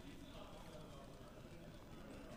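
Near silence: faint room tone of a large hall with faint, indistinct voices.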